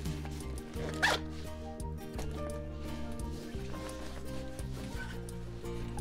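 A short zipper pull on a fabric diaper-bag pouch about a second in, over quiet background music.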